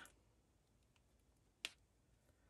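Near silence, broken once by a single short, sharp click near the end.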